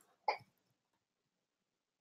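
A single short vocal sound from a person's throat, about a quarter of a second in.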